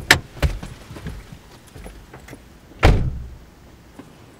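A car door clicks open, with a few small knocks, then is shut with a heavy thud about three seconds in.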